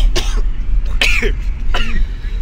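A person coughing a few times, over the steady low rumble of a moving car's cabin.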